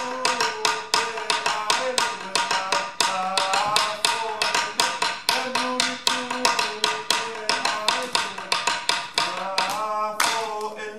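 Tongan lali, a wooden slit drum, beaten with two sticks in quick, even strokes, about five or six a second, with a voice singing a wavering melody over the drumming.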